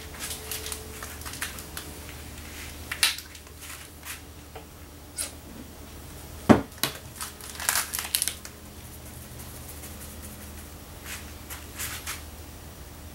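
Aerosol spray paint can hissing in a series of short bursts, with one sharp knock a little past the middle that is the loudest sound. A faint low hum runs underneath.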